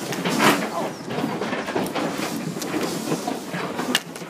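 Pigs packed in a metal livestock trailer, grunting and jostling, with the trailer's panels and floor rattling. There is a louder burst about half a second in and a sharp click near the end.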